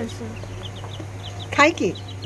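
Young chicks peeping: a run of short, high cheeps. A louder spoken word breaks in about a second and a half in.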